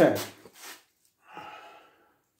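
A man's voice: the end of a spoken "okay" at the start, then a short, weaker breathy vocal sound about a second and a half in.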